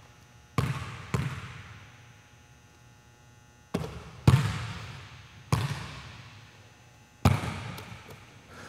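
Basketball bounced twice on a hardwood gym floor, then after the shot four more impacts spread over the next few seconds as the ball comes off the rim and bounces on the floor. Each thud rings on in the gym's echo.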